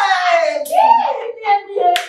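Women's excited exclaiming and laughing, with one sharp hand slap near the end, a high five between two women.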